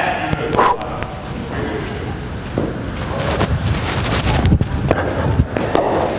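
A bowler's running footsteps on the artificial turf of an indoor net as he runs in and bowls a cricket ball, with a few sharp knocks near the end.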